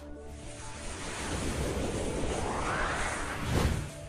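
Whoosh sound effect of a TV news logo animation: a swelling rush of noise that rises over about three seconds and peaks with a sharp burst near the end, over faint music.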